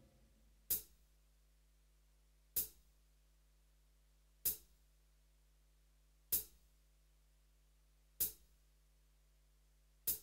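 A lone hi-hat-like tick from a MIDI backing track, struck about every two seconds during a break in the music, over a faint low hum.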